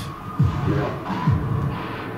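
Death metal / grindcore from a 7-inch vinyl record playing at 33 rpm instead of its proper 45 rpm, so it comes out slowed down, low-pitched and 'technoid'. A deep note dropping in pitch repeats roughly once a second.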